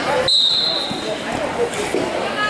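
Referee's whistle, one short blast that starts the wrestling period, over crowd chatter in the gym.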